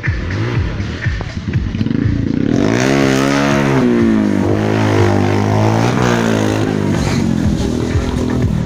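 Stunt motorcycle engine revving hard, its pitch sweeping up and down and growing louder about two and a half seconds in.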